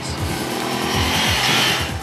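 Ducati Monster 795's 803cc air- and oil-cooled L-twin revving through its two exhaust cans, the exhaust note growing steadily louder as the revs rise.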